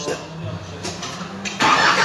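Light clicks of a scooter's CVT drive belt being seated by hand on its pulleys, over a low steady background hum, with a short loud burst of noise near the end.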